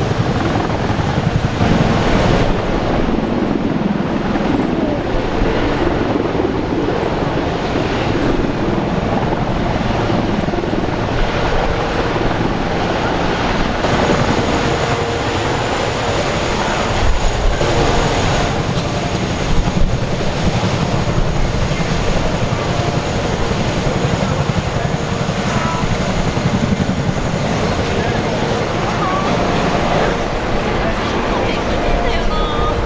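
Military rotorcraft flying, a loud, steady rotor and turbine sound.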